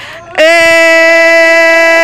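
A man's voice holding one long, loud "eeeh" at a steady pitch, starting about half a second in: an acted cry of a woman straining in labour.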